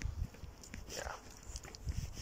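A quiet, mumbled "yeah" about a second in, over faint low bumps from footsteps and the handheld phone while walking outdoors.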